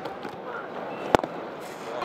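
A cricket bat strikes the ball once, a single sharp crack about a second in, over a steady murmur of the stadium crowd.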